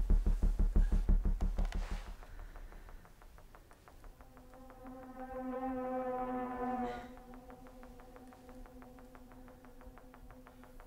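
Electronic horror score: a rapid pulsing synth beat that fades out about two seconds in. It gives way to a buzzing drone tone that swells from about four to seven seconds in, then drops back to a faint ticking pulse.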